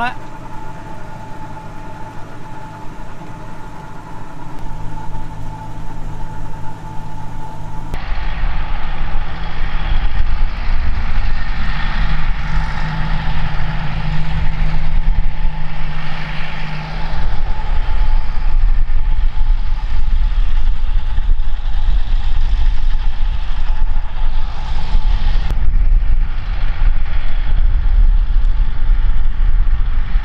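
Tractor engine running steadily, heard from the cab for the first several seconds. About eight seconds in, the sound changes to a Massey Ferguson tractor heard from outside, driving past with its fertiliser spreader working: the engine runs under a strong low rumble and a hiss.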